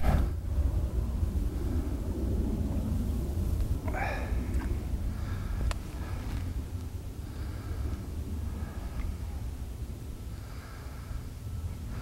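Wind buffeting the microphone on a choppy lakeshore, a low uneven rumble, with a few faint, brief higher sounds, the clearest about four seconds in.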